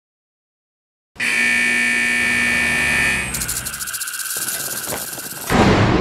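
A loud, steady electric buzzing drone made of several held tones, starting about a second in. A little after the middle it changes to a rapid, fine buzz. Near the end a loud burst of noise comes in.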